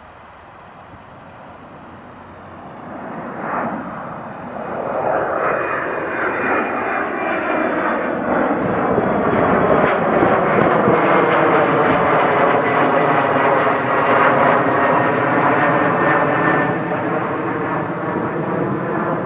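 Jet airliner's engines as it climbs out after takeoff and passes close overhead. The noise builds steadily over the first ten seconds or so, then holds loud, with a slowly sweeping, phasing quality.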